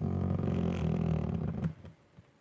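A man's low, drawn-out vocal sound held at one steady pitch for about a second and a half, then stopping.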